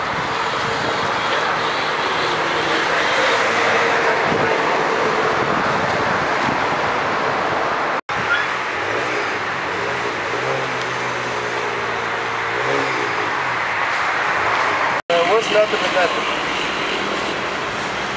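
Steady street traffic noise with voices talking in the background. The sound cuts out for an instant twice, where the footage is spliced.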